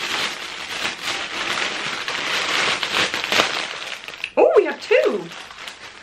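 Plastic mailing bag crinkling and rustling as it is opened and handled, for about four seconds, followed by a brief vocal sound near the end.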